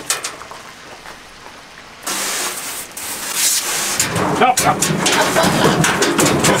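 Water spraying from a pull-down sink sprayer into a stainless steel wash tub. It starts suddenly about two seconds in and runs steadily.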